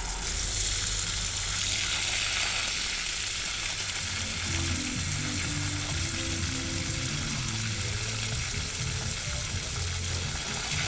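Pistol-grip garden hose spray nozzle spraying water steadily into the leaves and soil of potted trees: an even, continuous hiss.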